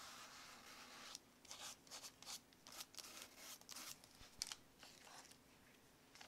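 Faint, irregular scratching of toothbrush bristles laden with black paint being worked in short strokes across thin notebook paper, with the strokes dying away near the end.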